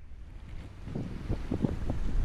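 Wind buffeting the camera's microphone on the open deck of a moving river cruise boat, in irregular gusts that grow louder over the two seconds.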